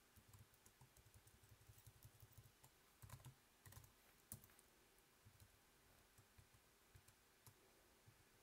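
Faint computer keyboard typing: a few soft key clicks around the middle, at a near-silent level.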